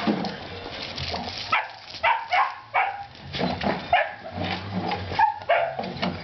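German Shepherd dogs barking and yipping in a quick series of short calls, starting about a second and a half in.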